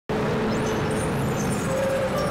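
Street traffic: cars and a motorbike driving past, their engines making a steady low drone.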